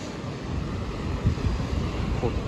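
A car driving past close by on a city street, heard as a low, uneven rumble, with wind buffeting the microphone.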